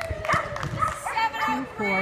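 A dog barking, mixed with people's voices.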